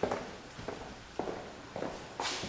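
Footsteps on a hard wood-look floor, about one step every half second, from someone walking with the camera through an empty room.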